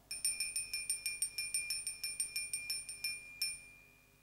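Small altar bell rung rapidly at the elevation of the chalice, about six strikes a second for some three seconds, then one last strike that rings on and fades. Each strike gives the same clear high ring.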